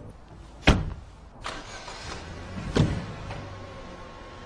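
Two car doors slamming shut about two seconds apart, the first the louder, with a softer rustle or thud between them and a low steady hum beneath.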